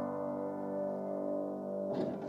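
Final piano chord of the song's accompaniment held and slowly dying away, with no voice over it.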